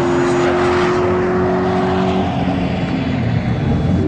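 Toyota GT86's naturally aspirated flat-four engine held at steady high revs on track; the note drops away about two seconds in and starts climbing again near the end.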